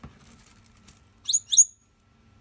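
An African grey parrot gives two short, high-pitched calls in quick succession about a second and a half in. Before them comes faint crackling of paper as it shifts in the paper-lined bin.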